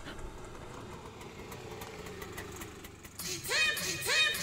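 Small engine of an auto-rickshaw running steadily, its hum dropping a little in pitch, before music comes in near the end.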